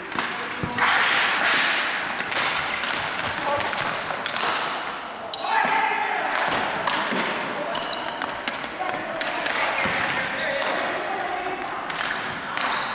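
Ball hockey play on a gym's hardwood floor: repeated sharp clacks of sticks against the ball, each other and the floor, with short high sneaker squeaks and players shouting, echoing in the hall.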